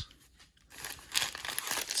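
Foil wrappers of sealed Topps baseball card packs crinkling as a stack of packs is handled and gathered up, starting about two-thirds of a second in.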